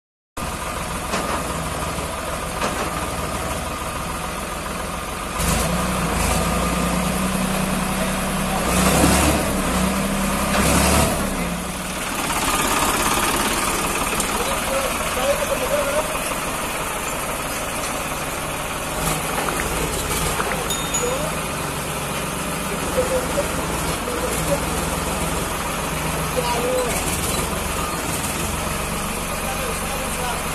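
Farmtrac 60 EPI 55 hp tractor's diesel engine running as it works through loose soil, louder with a steady low drone from about 5 to 12 seconds, then settling back to a lower running note. People's voices are faintly heard over the engine.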